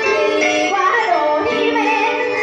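A woman singing into a microphone over instrumental accompaniment, with held, wavering notes.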